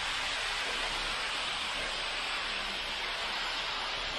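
Wet concrete sliding down a ready-mix truck's discharge chute into a foundation, a steady rushing hiss like running water.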